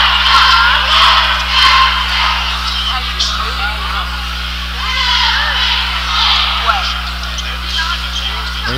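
Spectators in a gymnasium crowd shouting and chattering, a dense wash of many voices that is loudest in the first couple of seconds, with a steady low electrical hum underneath.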